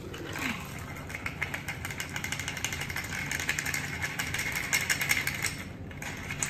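Ice rattling rapidly inside a stainless steel cocktail shaker shaken hard for about five seconds, stopping just before the end.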